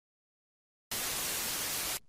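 Dead silence, then about a second in a burst of even static hiss that stops abruptly: a TV-static transition sound effect between posts.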